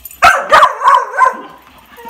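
A dog barking and yipping, four or five short, high-pitched calls in quick succession within a little over a second.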